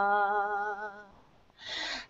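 A woman's voice chanting wordless 'light language' syllables, holding one sung note with a slight waver that fades out about a second in. After a brief pause there is a short breath just before the chant starts again.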